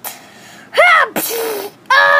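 A child's voice making short wordless vocal sounds: a pitched cry that rises and falls just under a second in, then a lower held note.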